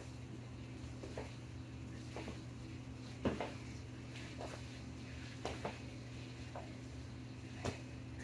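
Feet in sneakers landing on the floor during jump lunges: short thuds about once a second, one a little after three seconds in louder than the rest, over a steady low hum.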